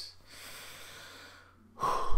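A man breathing out heavily after shouting, a faint breathy hiss for about a second, then a louder breath near the end.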